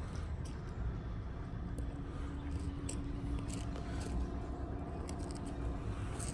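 Footsteps on gravel, irregular small crunches over a steady low rumble, with a faint steady hum through the middle.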